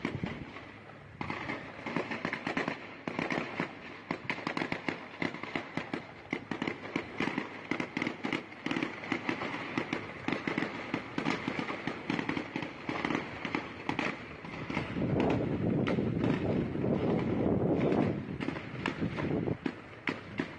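Sustained gunfire: a rapid, uneven string of shots that runs on throughout, heaviest from about fifteen to eighteen seconds in.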